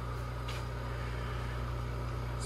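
Mechanical vacuum pump of a sputter coater running with a steady low hum, pumping the air out of the chamber.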